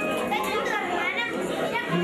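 Many overlapping voices of a roomful of seated guests chattering, no single speaker standing out. Music with steady held notes comes in near the end.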